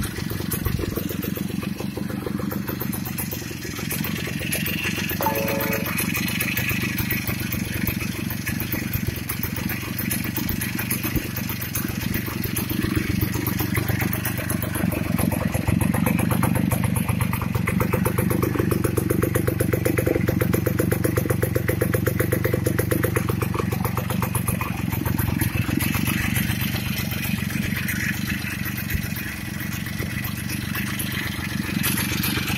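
1950 Victoria KR 25 Aero's single-cylinder two-stroke engine idling steadily on its first start-up, a little louder in the middle.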